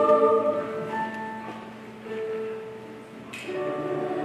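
Mixed school choir singing: a held chord fades out about half a second in, a quieter passage of single held notes follows, and fuller chords return near the end.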